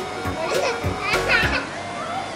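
A toddler's voice and a woman's laughter over steady background music, loudest about a second in.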